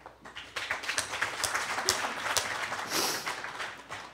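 Audience applauding, a spread of scattered hand claps that starts about half a second in and dies away near the end.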